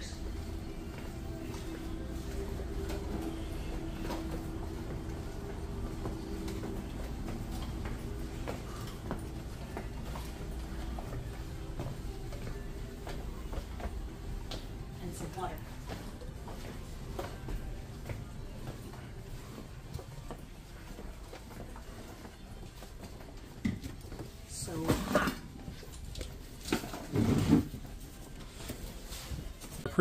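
Busy indoor public-area ambience: a steady low hum with background music and scattered voices, and a couple of louder voices passing close by near the end.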